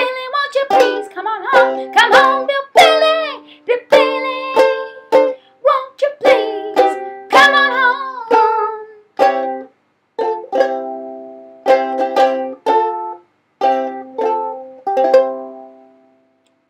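Ukulele strummed in a steady rhythm, with a woman singing over it for about the first half. After that the strummed chords carry on alone, and the last chord rings out and fades near the end.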